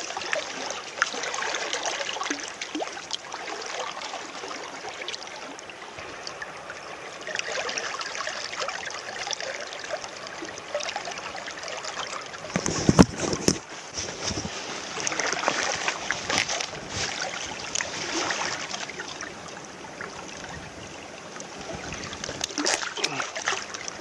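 Shallow river water running and splashing over rocks close by, with a louder burst of splashing and knocks about halfway through.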